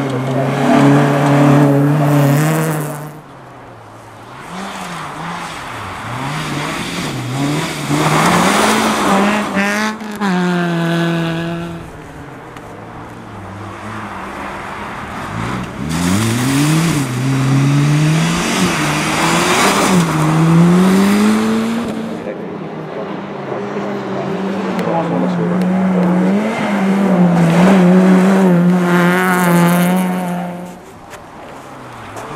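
Rally car engines revving hard as the cars pass one after another on a snow stage, each held at high revs and then climbing in pitch through repeated upshifts, along with the hiss of tyres and thrown snow.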